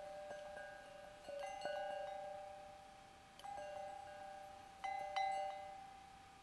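Soft closing music of bell-like chimes: single notes are struck every second or two, and each keeps ringing as it slowly fades.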